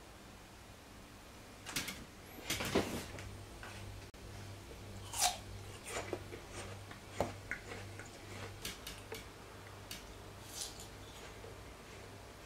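Irregular light clicks and knocks from cut Asian pear pieces being handled on a wooden cutting board, starting about two seconds in. The loudest is a longer crisp burst about three seconds in. A faint low hum pulses steadily underneath.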